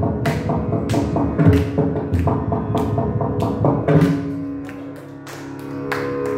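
Carnatic percussion: a mridangam playing fast strokes with deep bass booms over a steady drone. About four seconds in the booming strokes stop, leaving the drone and lighter, sharp strokes.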